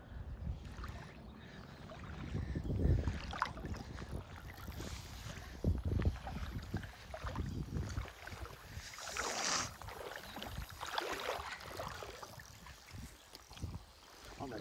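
Water sloshing and splashing, irregular and uneven, as someone wades in a slow river, with low buffeting on the microphone. The splashing is loudest about two-thirds of the way through.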